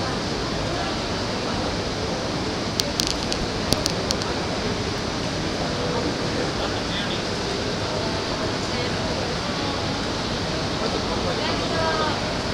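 Railway station platform ambience: a steady roar of background noise with faint voices in it. A few sharp clicks or taps come close together about three to four seconds in.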